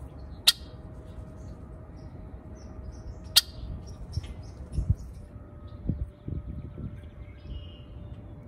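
Birds at a feeder: two sharp clicks about three seconds apart, with faint short chirps scattered through. A few low thumps follow in the second half.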